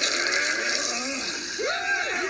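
A sigh, then several gruff cartoon monster voices grunting and laughing together, swelling about a second and a half in.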